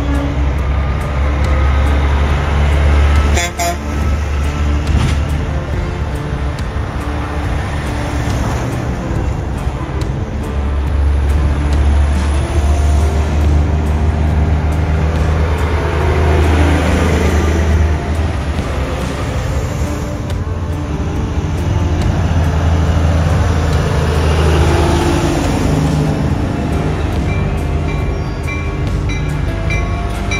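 Semi trucks driving past one after another, their diesel engines rumbling loudly and sweeping in pitch as each one goes by, with horns tooting.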